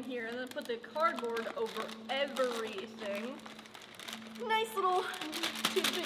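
Voices talking quietly, with a plastic flameless ration heater bag crinkling near the end as it is pulled open and unfolded.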